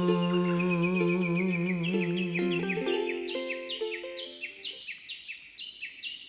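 The last held note of a ukulele-accompanied song, sung with vibrato over a ringing ukulele chord, fades out about three seconds in. Over it and then alone, a bird chirps over and over, about three short calls a second.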